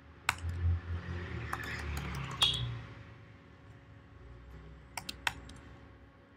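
Computer keyboard being typed on in short spurts: a few separate sharp key clicks, then a quick run of three near the end, with a low rumble under the first half.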